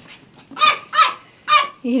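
Small dog giving three short, high-pitched yips, about half a second apart.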